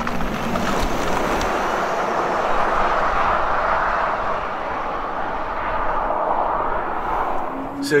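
BMW iX electric SUV passing at speed: tyre and road noise with no engine note, swelling as it passes and fading as it drives away.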